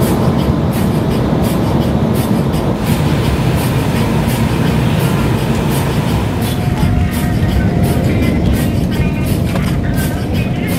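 Jet airliner cabin noise: the loud, steady rumble of the engines and airflow, heard from inside the passenger cabin.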